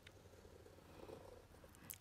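Near silence: a fine-tip Sakura Pigma Micron pen drawing a curved line on a paper tile, faintly audible, a little louder about a second in.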